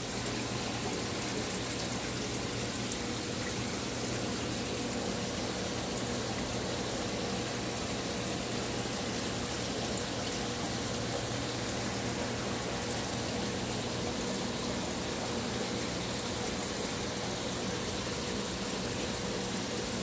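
Steady rush of circulating water with a low hum from saltwater aquarium pumps and filtration, unchanging throughout.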